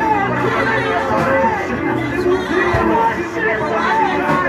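Church praise and worship: several voices on microphones singing and calling out praise together over a steady musical backing, with the congregation joining in.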